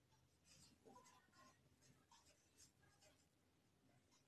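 Very faint marker pen writing on a whiteboard: a series of short scratchy strokes with a few brief squeaks as the letters are drawn.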